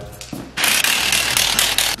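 Pneumatic impact wrench rattling in one burst of about a second and a half, starting about half a second in.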